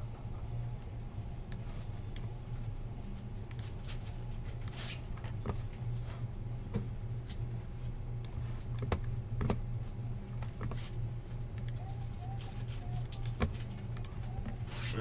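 Steady low hum with scattered faint clicks and taps.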